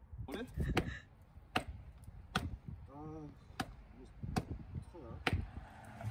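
A sneaker being knocked against a wooden sleeper beam: a clatter as it is picked up, then five sharp knocks a little under a second apart.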